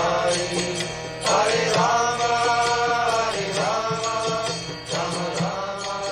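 Devotional kirtan chanting sung to music: long held sung notes that bend in pitch over a steady percussion beat, softening near the end.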